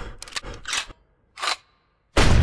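A quick run of sharp clicks and rustles, then a short swish about one and a half seconds in, with silence between and after.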